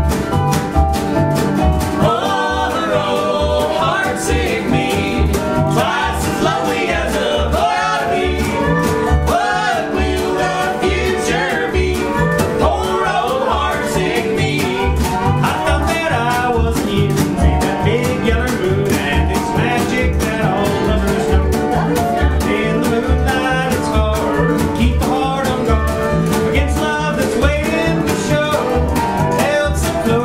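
Acoustic country band playing with a steady beat: acoustic guitar, resonator guitar and upright bass, with a woman singing lead from about two seconds in and men joining in harmony.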